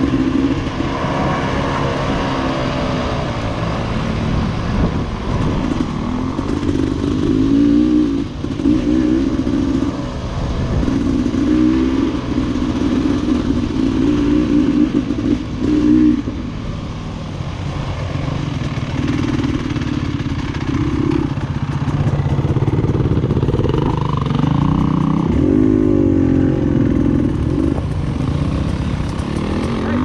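Single-cylinder two-stroke engine of a 2019 Beta 300RR Race Edition enduro bike, heard from the bike itself while it is ridden on a dirt trail. Its pitch rises and falls every few seconds as the throttle is opened and rolled off.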